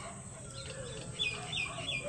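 A bird chirping faintly in the background: a quick run of short, high notes, each sliding down in pitch, in the second half.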